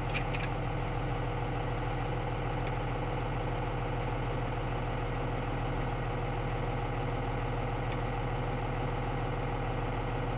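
Box truck engine idling steadily, heard from inside the cab as a low, even rumble with a steady hum. A few light clicks come right at the start.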